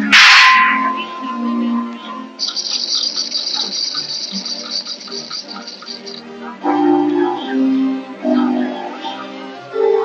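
A single rifle shot from a shooting-gallery rifle, followed by a lingering ringing tone, over orchestral film music. A few seconds in, a high, rapid ringing lasts about four seconds.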